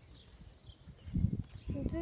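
Quiet outdoor background, then, about a second in, irregular low rumbling bumps on the phone's microphone as the phone is moved, with a girl's voice starting near the end.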